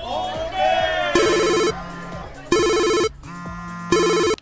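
Mobile phone ringtone: an electronic trilling ring that sounds three times, about half a second each and roughly 1.4 seconds apart, signalling an incoming call.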